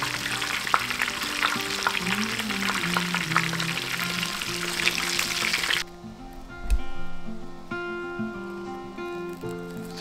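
Breaded chicken nuggets deep-frying in hot oil, a dense sizzle with many small crackles and pops, which cuts off abruptly about six seconds in. A single sharp thump follows about a second later.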